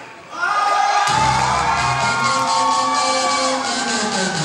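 Loud dance music played back in a hall: after a brief drop at the start, a held chord swells in and a low bass beat enters about a second in. An audience is cheering over it.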